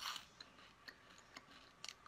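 Faint crunching of crunchy silkworm pupae being chewed: a short crunch at the start, then a few small crisp clicks about every half second.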